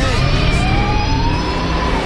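A racing vehicle's whine rising in pitch over about a second and then holding steady, over a low rumble.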